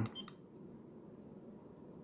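A brief cluster of small clicks from the push button of a handheld keyfob radio remote being pressed, just after the start, followed by quiet room tone.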